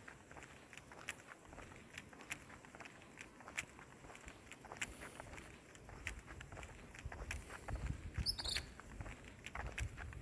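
Faint footsteps on an asphalt road, about two steps a second. A brief run of high chirps comes about eight seconds in, and a low rumble builds in the second half.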